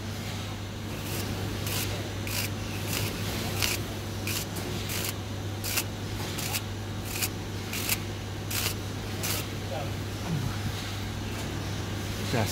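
A fin comb scraping through the bent fins of a chiller's condenser coil to straighten them: a series of short scraping strokes, roughly one or two a second, that stops about nine and a half seconds in. A steady low hum lies under it.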